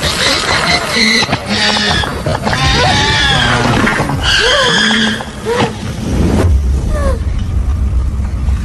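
Film soundtrack: music mixed with short, arching pitched cries, with a low rumble setting in about six and a half seconds in.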